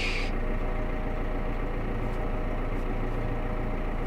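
Valtra tractor running while driving across a field, heard from inside the cab: a steady low drone with a faint steady whine above it.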